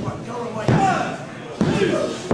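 Sudden thuds and slaps of a wrestling bout on the ring mat, three hits about a second apart, with shouting voices between them.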